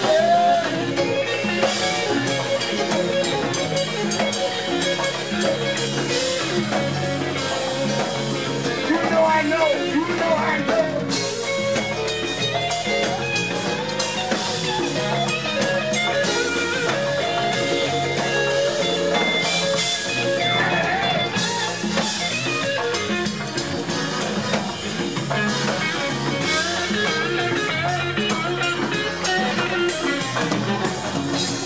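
Live funk band playing, with electric guitar and drum kit prominent.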